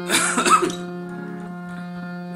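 Harmonium holding one steady drone note throughout, with a short breathy vocal burst, like a cough or throat-clearing, in the first half-second.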